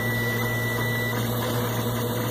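3D printer running with its geared extruder: a steady mechanical hum with a thin high whine that stops about a second in.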